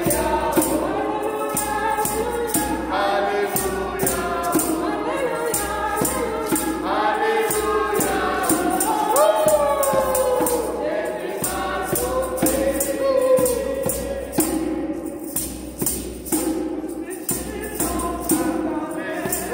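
Women's voices singing a French hymn in parts, accompanied by a djembe-style hand drum and hand claps keeping a steady beat.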